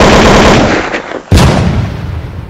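Two loud sudden blasts, the first right at the start and the second about a second and a half later, each trailing off in a rough rumbling noise. It is a gunfire-like sound effect laid over the outro.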